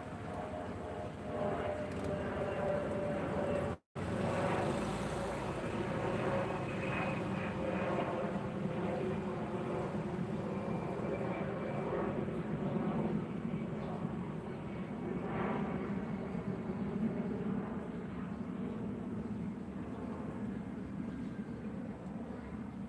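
A steady engine rumble that goes on throughout, with the audio cutting out for an instant about four seconds in.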